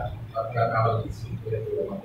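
A man's voice murmuring indistinctly in two short stretches over a steady low hum.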